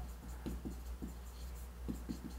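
Stylus writing on an interactive display board: a run of faint, short taps and scratches of the pen tip on the screen as words are written.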